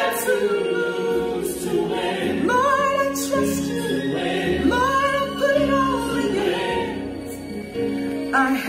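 A woman singing a slow gospel song, her voice gliding between held notes over sustained accompanying chords.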